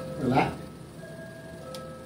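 A short vocal sound about a quarter second in, then a pause filled by a faint steady hum of a few held tones.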